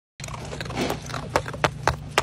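A sea otter handling and knocking a block of ice amid loose crushed ice, the shell-cracking behaviour that the ice treat stands in for: a crunchy shuffle, then three sharp knocks in the second half. A steady low hum runs underneath.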